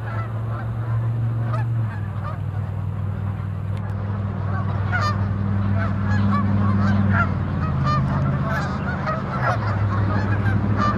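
A large flock of Canada geese honking, many overlapping calls that become denser and busier from about halfway through. A steady low hum runs beneath them.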